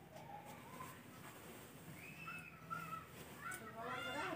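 Faint crow calls in the background: a couple of short cawing calls about halfway through and another near the end, over quiet room tone.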